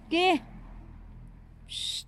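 A cat gives one short meow that rises and falls in pitch, just after the start. Near the end comes a brief hissing noise.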